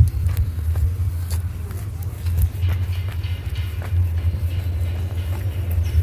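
Outdoor street noise: a steady low rumble with scattered short clicks and faint voices in the background.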